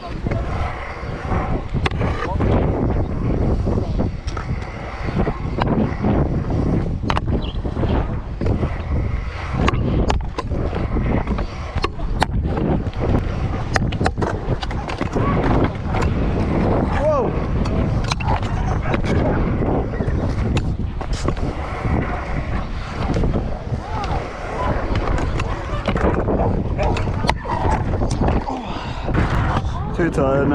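Stunt scooter wheels rolling over concrete, with frequent sharp clacks and knocks as the scooter rides over ramps and edges, and wind rumbling on the microphone.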